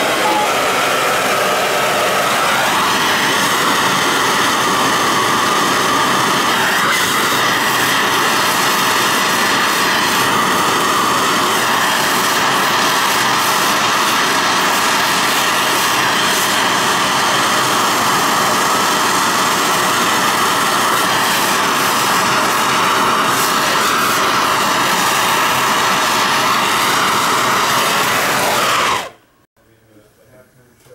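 Plumber's torch flame hissing steadily as it heats a male adapter on the end of a copper pipe to sweat-solder it on; the flame gets somewhat fuller about two seconds in and is shut off suddenly near the end.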